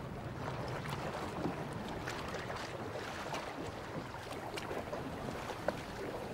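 Steady rush of wind and sea water around a small boat, with a few light knocks and clicks.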